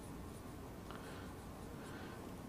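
Faint, light squeaks of a marker on a whiteboard, heard about a second in and again near the end, over quiet room tone.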